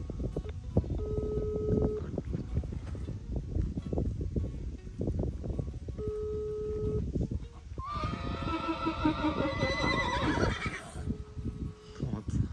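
Telephone ringback tone from a phone held to the ear, in the Brazilian pattern: three one-second beeps about five seconds apart, as the call rings unanswered. Between the second and third beep, about eight seconds in, a horse gives a loud whinny lasting about three seconds.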